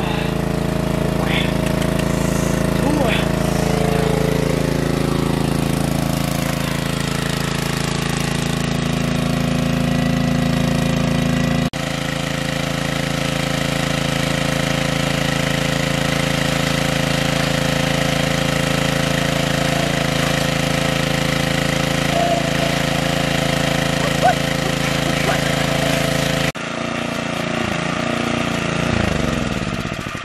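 Small gasoline-engine water pump running steadily at one even pitch while it pumps muddy water out of a pool. The sound changes abruptly twice, about a third of the way in and near the end.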